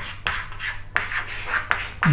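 Chalk writing on a chalkboard: a quick run of short scratching strokes, with a few sharp taps as the chalk meets the board.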